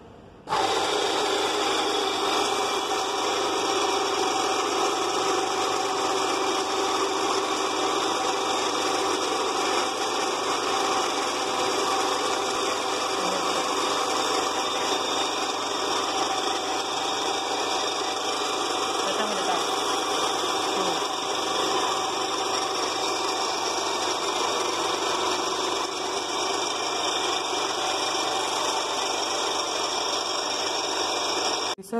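Electric motor-driven emery belt grinder for preparing metallographic specimens, starting abruptly about half a second in and then running steadily.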